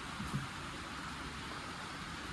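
Steady background hiss, with a couple of faint low thuds near the start.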